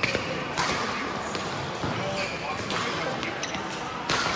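Badminton rally: sharp racket hits on the shuttlecock every second or so, with short shoe squeaks on the court floor. The strongest hit comes right at the end, as a jump smash.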